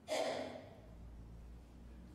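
A man's short, breathy exhale close to a microphone, a sigh or soft laugh-breath, loud at first and fading within about half a second. A faint low hum stays underneath.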